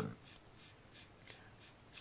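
Faint pencil scratching on drawing paper, a few short strokes.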